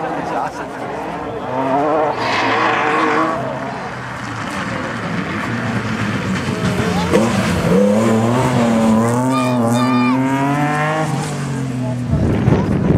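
Rally car engine revving hard as the car comes down a cobbled stage, its pitch climbing and dropping with the throttle and gear changes, loudest in the last few seconds.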